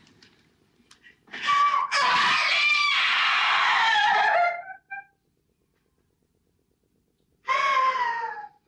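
A woman screaming in grief: one long, high cry lasting about three seconds that wavers and falls in pitch at its end, then a second, shorter cry near the end.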